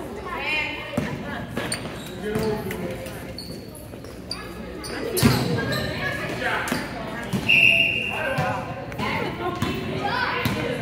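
Basketballs bouncing on a hardwood gym floor, mixed with shouting voices, in an echoing hall. A brief high-pitched squeal comes about three-quarters of the way through.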